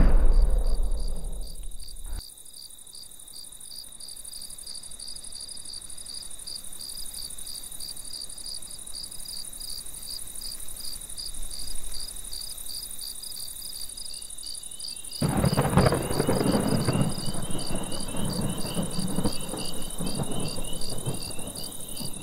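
Insects chirping steadily in an even, pulsing rhythm, after a fading whoosh in the first two seconds. About two-thirds of the way through, a low rumbling noise with a hiss comes in under the chirping.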